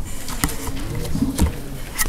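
A few sharp clicks and knocks from a handheld camera being moved over a printed page, with a short, low, coo-like sound just before the second click.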